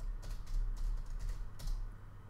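Typing on a computer keyboard: a quick run of about six keystrokes, over a low steady hum.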